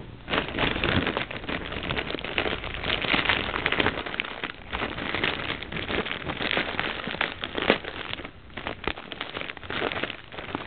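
Crinkling and crackling of a mailing package being handled by hand as it is being opened, with many small crackles in quick succession that ease briefly near the end.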